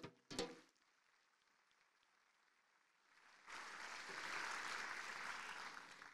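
Audience applause that starts about three and a half seconds in and keeps on steadily, preceded by two brief bumps at the very start.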